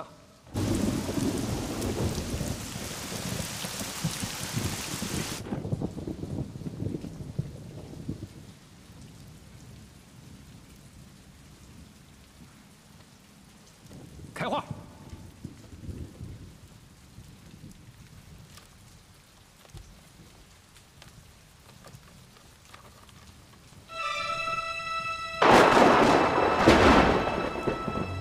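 Thunderstorm with rain: a loud thunderclap just after the start rumbles away over several seconds, a sharper crack comes about halfway, and another loud clap breaks near the end as music sets in.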